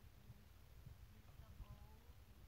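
Near silence: faint low rumble with a steady low hum.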